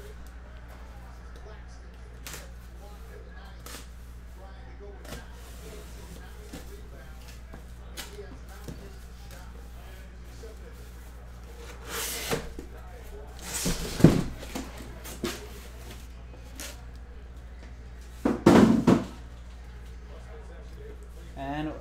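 Cardboard shipping case being opened and handled by hand. There are a few light clicks, then scraping and knocking of cardboard flaps and boxes in the second half, loudest about two-thirds of the way in and again near the end. A steady low hum runs underneath.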